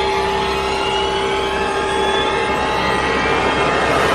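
Steady, dense droning sound effect from a radio station promo break, with a couple of held tones and a few faint tones slowly rising in pitch.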